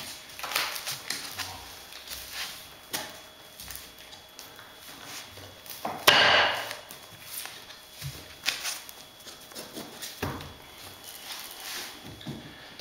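Witex laminate floor planks being fitted and pressed together by hand: scattered wooden knocks and clicks of the boards' locking joints, with one louder scraping rustle about six seconds in.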